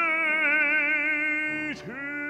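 Baritone singing a classical art song, holding a long note with vibrato over a low, steady instrumental accompaniment. Near the end the note breaks off with a brief downward slide and a new note begins.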